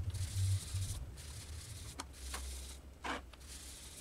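A small foam sponge dabbed and rubbed on cardstock to apply ink: a few soft taps and scuffs over a low rumble.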